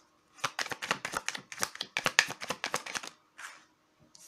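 Tarot cards being shuffled by hand: a quick run of crisp card clicks for about two and a half seconds, then one softer swish as a card is drawn from the deck.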